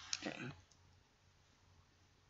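A brief trailing murmur of a man's voice with a couple of small clicks in the first half-second, then near silence: room tone.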